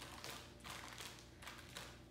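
Faint, irregular crinkling and squishing of a plastic zip-top bag as gloved hands mash banana and yogurt inside it, in a run of soft strokes.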